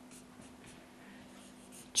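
Felt-tip marker writing on flip-chart paper: a run of faint, short scratching strokes.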